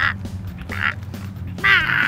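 A high-pitched, sped-up cartoon character voice babbling a few 'ba' syllables over background music.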